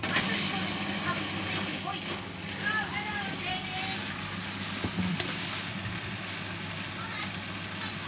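LG direct-drive front-loading washing machine running in its spin cycle: a steady low hum with a rushing noise that steps up right at the start.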